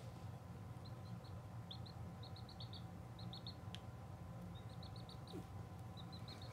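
Baby chick peeping: faint, high-pitched cheeps in quick runs of two to five, repeated every second or so.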